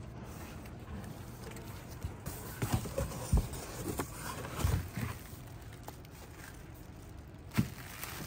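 Cardboard box flaps being opened and a plastic-wrapped CCS1 charging cable lifted out, with a run of knocks and handling noises in the middle and one sharp knock near the end.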